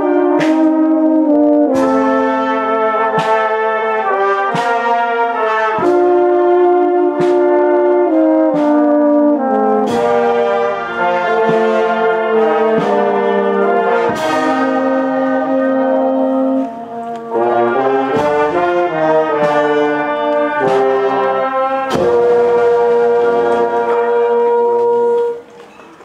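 A marching town brass band with trumpets plays a slow procession march over a struck beat about every second and a half, ending on a long held note and stopping shortly before the end.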